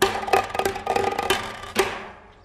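A percussionist playing with sticks on a small mixed kit of snare drum, bongos and cymbals: a quick run of hits that ring with a pitch, with about six sharp accents, the last one near the end.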